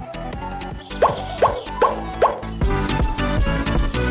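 Four quick, rising 'bloop' sound effects, evenly spaced about 0.4 s apart, over quiet background music. Fuller music comes back after them, a little past the middle.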